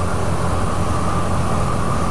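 Honda CBR125R motorcycle's single-cylinder engine running steadily under way, mixed with wind and road noise from riding.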